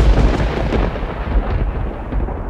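Thunder sound effect: a loud, deep rumble with crackle, loudest at its start.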